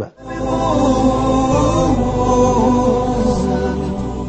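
Vocal music: a chanted, choir-like passage of long held notes that starts a moment in, moving only a little in pitch.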